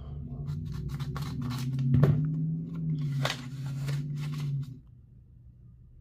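Scissors snipping through a paper envelope: a run of short, sharp cuts and paper crinkles over a low steady hum, all stopping about three-quarters of the way through.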